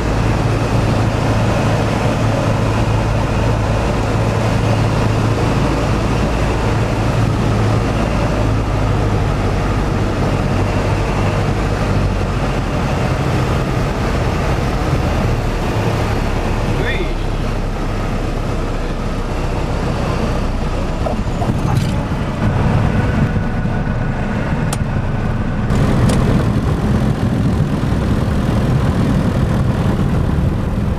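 Piper PA-28 Cherokee's piston engine and propeller droning inside the cockpit, mixed with wind and airframe noise, through the end of the approach, touchdown and landing rollout. The engine tone changes about twelve seconds in, and a short squeak sounds at touchdown.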